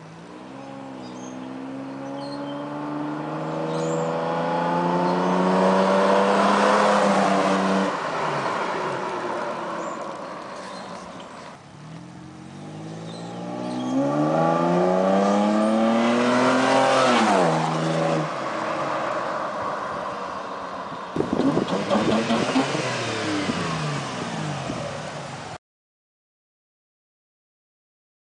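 A 1997 Toyota Tacoma pickup's engine, breathing through a K&N cold air intake, accelerates hard past twice. Each time the pitch climbs through the revs, then drops away as the truck passes. About 21 seconds in comes a sudden, louder, rattly burst of engine with falling pitch, and the sound then cuts off abruptly.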